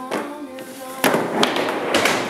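Skateboard on a plywood mini ramp: two sharp knocks about a second in, then the rush of wheels rolling on the wood.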